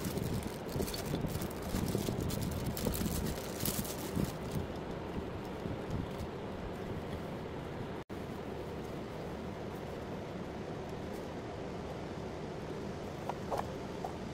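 Clear plastic bag crinkling and rustling as it is pulled off a ceramic lamp for the first few seconds, then a steady low background noise.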